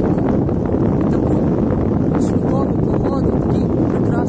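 Strong wind blowing across the microphone, a loud, steady low rumble with no let-up.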